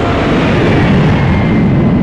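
Four-engined jet airliner flying low overhead: a loud, steady jet engine roar with a faint high whine that slides slightly down in pitch.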